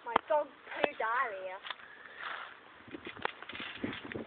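Girls' voices making short wordless laughing and squealing cries, with one longer rising-and-falling cry about a second in, and a few sharp clicks.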